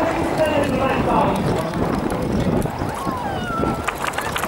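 People talking close by over the low, steady rumble of a Grumman Ag-Cat biplane's radial engine as the plane taxis.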